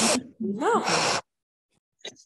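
Beaver vocalizing while begging for food: a breathy huff, then one short whining cry that rises and falls in pitch.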